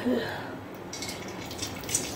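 Mung dal batter dropped into a kadai of oil that is not yet fully hot, starting to sizzle faintly with light crackles from about a second in.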